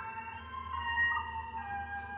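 Slow, soft pan flute music: long held notes, several overlapping, over a steady low hum.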